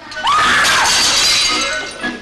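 A tray of china plates crashing to the floor and shattering, in one sudden clatter of breaking crockery that fades over about a second and a half.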